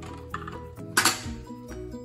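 Background music playing, with a sharp clack about a second in, and a lighter knock just before it, as stiff plastic plates are set down onto a wooden ramp.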